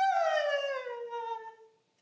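A woman singing a long, drawn-out note with no accompaniment, the pitch sliding slowly down as it fades; a new held, falling note starts right at the end.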